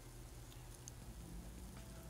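Near silence: faint steady low hum of room tone, with a couple of tiny ticks partway through.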